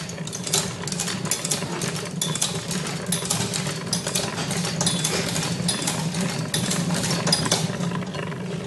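Motor-driven spinning disc of a kinetic animation machine running, with a steady low hum and irregular clicking and rattling from its mechanism.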